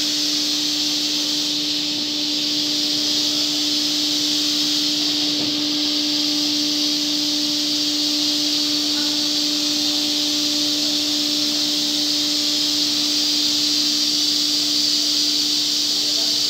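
Holztek CNC nesting router's spindle routing a board panel: a steady, even tone with a strong hiss over it, holding constant throughout.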